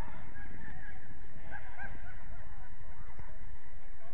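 Distant shouts from players on the pitch, a few short calls about a second and a half in, over a steady low rumble.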